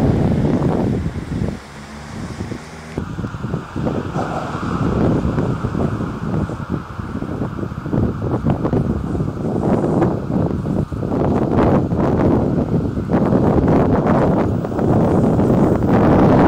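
Wind buffeting the microphone: a gusty, uneven low rumble that rises and falls in loudness.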